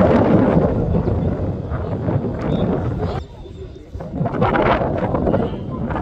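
Wind buffeting the microphone, mixed with indistinct shouting from players and spectators around the pitch; it eases briefly about three seconds in.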